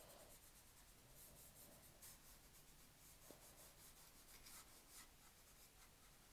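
Near silence with the faint scratch of a watercolour brush dabbing green paint onto sketchbook paper, and one small tick about three seconds in.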